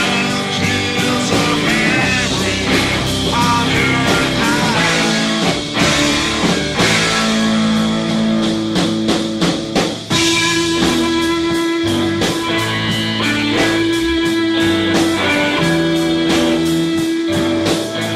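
Rock music with no vocals: electric guitar playing sustained notes, some bent in pitch, over a drum kit.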